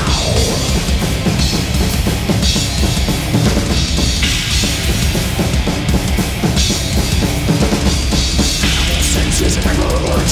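Death metal played live, with the drum kit loud in the mix: fast, dense bass drums, snare and a steady wash of crash and ride cymbals over the band.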